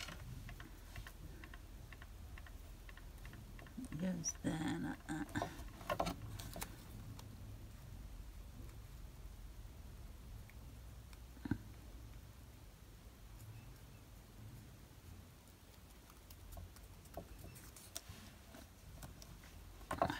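Small die-cut card-stock pieces being handled and pressed together by hand: faint taps, ticks and light paper rustle, with one sharper click about halfway through, over a low steady hum.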